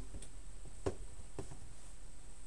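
Three faint, light clicks about half a second apart as small objects are handled, over a low steady background hum.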